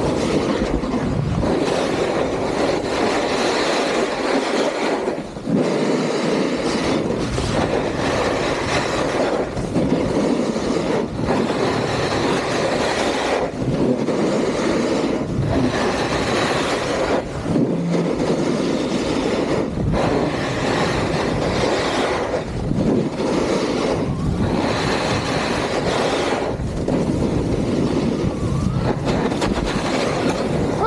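Edges scraping over firm groomed snow during a fast run down a ski slope, with wind rushing over the camera's microphone. The noise is steady and loud, dipping briefly about every one and a half to two seconds as the rider changes turns.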